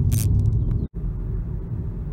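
Steady low road rumble inside the cabin of a 2012 Nissan Leaf electric car moving at about 50 km/h. The sound drops out for an instant just under a second in, where the recording is cut, and then goes on the same.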